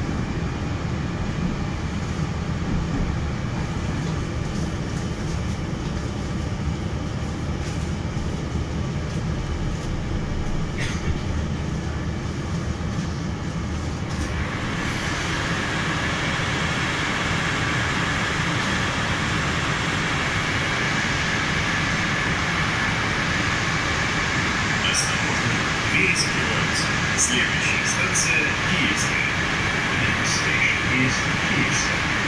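Moscow Metro Circle line train heard from inside the car: a steady low rumble. About halfway through it grows louder and hissier, and short clicks and knocks come near the end.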